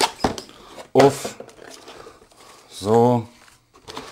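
Cardboard router packaging being opened and handled, with clicks and light rustling, under two short wordless vocal sounds from a man, the second a drawn-out hum about three seconds in.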